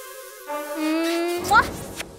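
A comic buzzing sound effect, its pitch creeping slowly upward for about a second, then ending in a quick upward swoop. It goes with a stink cloud from a rotten fish.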